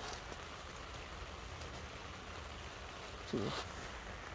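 Steady rain falling, heard as an even hiss, with a brief low voiced sound from a person about three seconds in.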